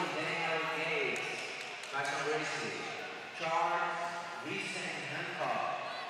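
Men's voices in a large hall, talking or calling out in several short phrases, quieter than the commentary and with no clear words.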